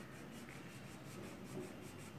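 A green crayon rubbing back and forth on a drawing-book page as it colours in, faint and continuous.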